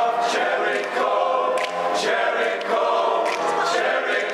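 Men's choir singing together in several voice parts, with crisp 's' consonants landing together several times.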